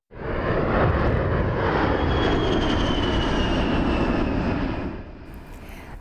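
A-10C Thunderbolt II's twin turbofan engines on a flyby: a steady jet roar with a high whine that slowly falls in pitch, dying away near the end.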